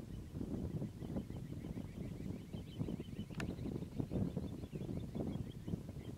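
Wind buffeting the microphone on an open shore, an uneven low rumble that rises and falls in gusts. Faint, rapid high-pitched chirping runs in the background, and there is one sharp click about three and a half seconds in.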